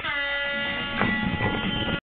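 Air horn blast: a chord of several steady tones held without a break and then cut off abruptly, with a brief knock about a second in.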